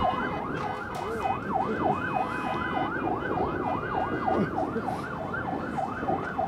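Fire truck siren in a fast up-and-down yelp, about three sweeps a second, over the noise of a crowd on the shore.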